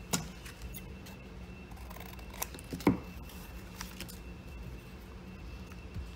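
Paper scraps being handled on a craft table: a few short rustles and taps, the loudest about three seconds in.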